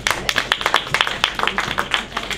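Audience clapping: many quick, irregular separate claps.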